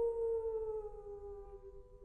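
Soprano voice holding a long note that slowly slides downward and fades, with a second steady note held at the same pitch beside it.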